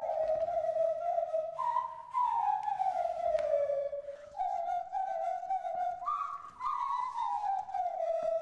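Nose flutes playing a slow melody in a pure, whistle-like tone, the held notes sliding downward between pitches in several long glides.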